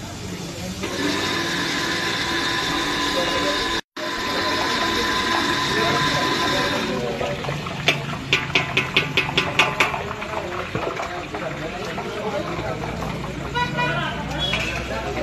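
Electric sev/namkeen extruder machine running with a steady high whine made of several tones, which stops about seven seconds in. Then comes a quick run of about ten clicks, around five a second, over a steady background hiss.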